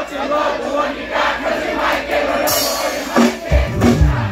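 Live reggae-rock band with a large crowd cheering. The bass and drums drop out, leaving guitar and crowd voices, then come back in with heavy low hits near the end.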